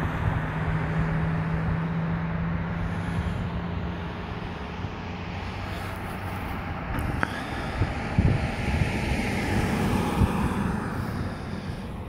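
A car driving along a highway, heard from inside: steady road and engine noise with some wind. A low hum fades out after about four seconds.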